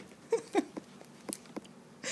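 A woman's laughter trails off in two short, falling chuckles, followed by three faint clicks.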